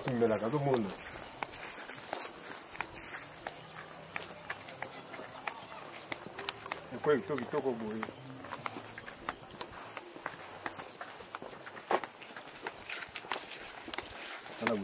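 An insect chirping in a high, even pulse, about three chirps a second, over footsteps and the rustle of dry grass along a path.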